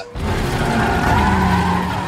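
Car engine revving hard with tyres squealing, a film-trailer sound effect. It starts abruptly after a brief gap and holds loud and steady.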